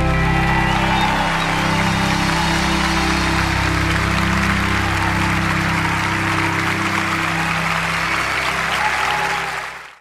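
Large audience applauding over the band's final chord as it rings on, the whole sound fading out just before the end.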